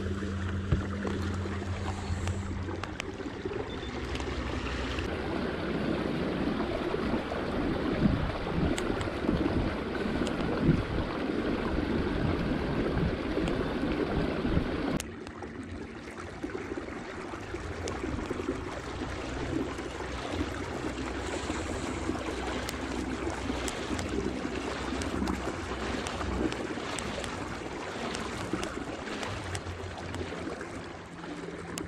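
Kayak under way on calm water: a steady rush of water along the hull and wind on the microphone, with a low hum coming and going. The sound drops suddenly about halfway through.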